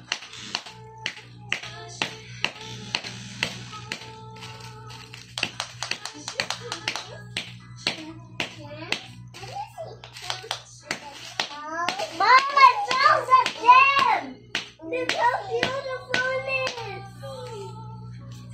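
Repeated sharp, irregular taps of a wooden mallet and chisel chipping at a plaster dinosaur dig-kit block. From about twelve seconds in, a child's high voice rising and falling in a sing-song way takes over, with a few more taps among it.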